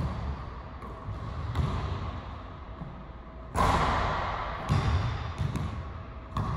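Basketball bouncing on an indoor gym court: irregular thuds with a room echo, the loudest about three and a half seconds in.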